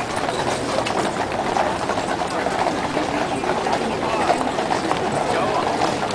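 Horses' hooves striking the paved road as a troop of mounted cavalry walks past, under the steady chatter of a large crowd.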